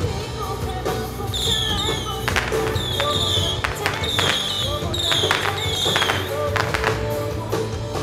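Music playing under a street crowd, with firecrackers cracking sharply several times through the middle. A run of short, high falling chirps repeats about twice a second over the same stretch.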